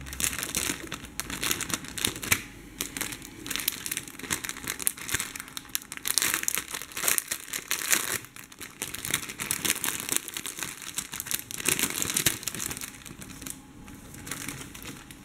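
A thin clear plastic bag crinkling as hands handle it and pull skeins of embroidery floss out of it: a steady run of irregular crackles that thins out near the end.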